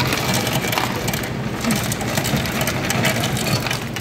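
Soda fountain ice dispenser running with a mechanical hum while ice cubes clatter into a paper cup. Near the end, soda starts pouring from a fountain spout over the ice.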